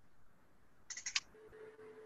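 A quiet pause with a quick cluster of faint clicks about a second in, then a faint steady tone near the end.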